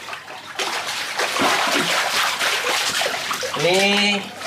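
Water splashing and sloshing in a shallow concrete fish pond as a hand stirs and scoops through it.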